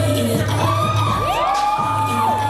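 Loud dance music with a steady bass beat playing over a live audience that cheers, with long high whoops that rise, hold and fall, starting about half a second in and overlapping.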